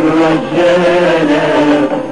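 Voices singing an Arabic song in a chant-like style, holding long notes that glide from one pitch to the next.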